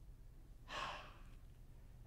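A man's single audible breath, about half a second long, in a quiet pause between sentences.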